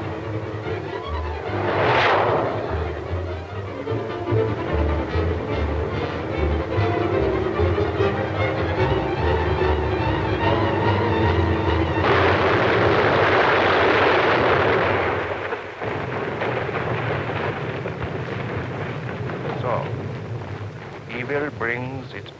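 Dramatic film score over the low rumble of a car driving fast. About twelve seconds in, a sudden loud burst of crash-and-explosion noise lasts some three seconds and then dies away.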